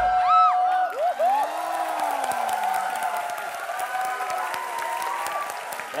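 Studio audience applauding and cheering, with many high-pitched screams, right as the dance music cuts off.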